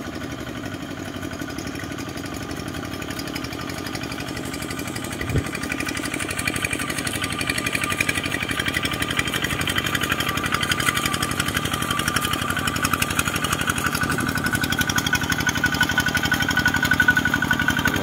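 Single-cylinder diesel engine of a walk-behind two-wheel tractor, running steadily under load as it drags a levelling board through paddy mud. It grows louder as it comes closer, with one sharp knock about five seconds in.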